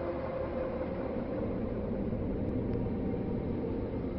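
Dark ambient background music: a steady low rumbling drone without a beat or distinct events.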